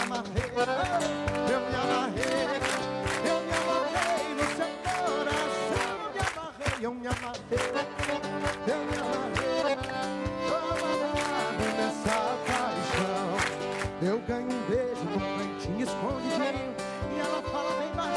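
Instrumental break of a live sertanejo song: piano accordion playing the melody over strummed acoustic guitar and a cajón keeping a steady beat.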